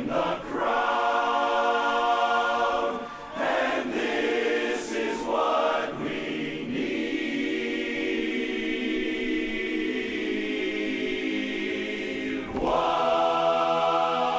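Large men's barbershop chorus singing a cappella in close four-part harmony: a few short phrases, then a long, softer held chord from about seven seconds, and a louder entry near the end.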